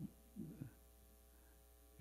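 Near silence with a steady electrical mains hum, and a faint low thump or two about half a second in.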